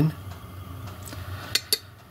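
A few light metallic clinks about one and a half seconds in, as steel rods and small brass bearing blocks are set down on a steel bench plate.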